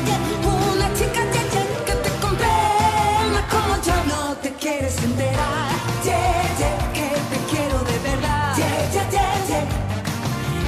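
A woman singing a Spanish dance-pop song into a handheld microphone over its backing track with a steady beat. The bass drops out briefly about four and a half seconds in.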